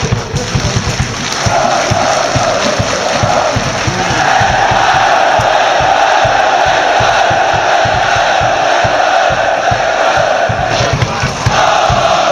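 Large crowd of football supporters chanting in unison, one long drawn-out chant that swells about four seconds in and holds loud until a brief dip near the end.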